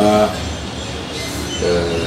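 A brief spoken syllable, then a pause over a steady low background hum, and speech resuming near the end.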